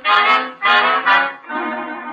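A brass music bridge from a radio drama, played as two loud, short chords followed by a softer held chord. It marks a change of scene.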